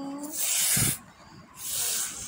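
A held, sung-out voice note ends just after the start, followed by two short bursts of hissing noise about a second apart, the first with a low thump.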